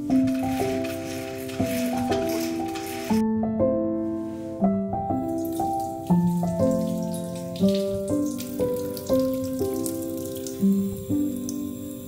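Soft piano background music playing a slow melody, over a kitchen tap running into a sink as a sweet potato is rinsed under it by hand; the water breaks off briefly about three seconds in.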